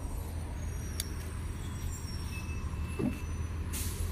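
Outdoor background noise: a steady low rumble, like distant traffic, with a faint click about a second in.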